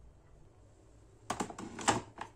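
A quick cluster of hard plastic clicks and knocks starting about a second in, the loudest just before the end, from a capsule coffee machine's plastic capsule adapter being handled.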